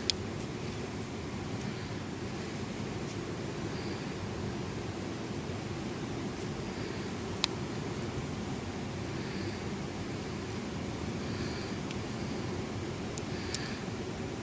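Steady low rushing of a river flowing close by, with two sharp clicks, one right at the start and one about halfway through.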